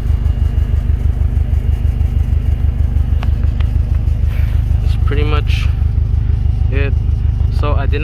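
2016 Subaru WRX STI's turbocharged flat-four engine idling, a steady low rumble with a fast, even pulse.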